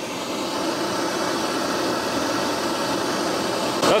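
Propane torch flame burning with a steady, even hiss and rush as it heats the spiral bimetal of a fan-and-limit switch.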